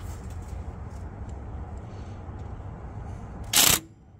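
Cordless impact wrench and socket being handled onto a crankshaft balancer bolt: a low steady rumble with a few faint clicks, then one short loud burst of noise about three and a half seconds in.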